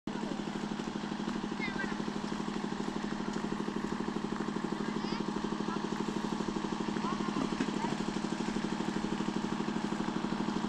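An engine idling steadily nearby, with a rapid, even pulse, like a motorcycle or small engine ticking over. A few short high chirps sound over it.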